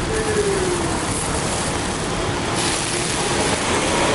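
Steady hiss of rain falling on umbrellas and the street, mixed with traffic noise, with a brief faint voice near the start.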